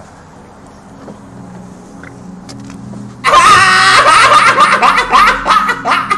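A man laughing loudly and hard, breaking out suddenly about three seconds in after a quieter stretch.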